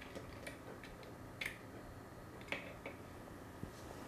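A few faint, scattered clicks and taps of a connector being plugged in by hand, the sharpest about a second and a half in.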